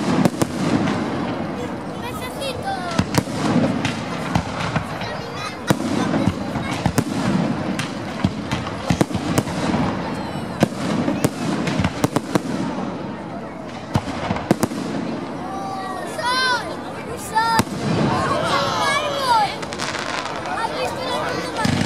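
Aerial fireworks display: many sharp bangs and cracks from bursting shells and rising comets, one after another, over dense crackling.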